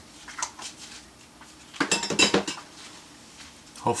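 A few light clicks, then a brief clatter of small hard objects clinking together about two seconds in, as things are handled and set down on a workbench.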